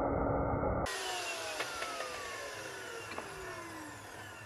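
DeWalt sliding mitre saw running in timber for under a second, then its motor and blade winding down in a slowly falling whine, with a few light clicks.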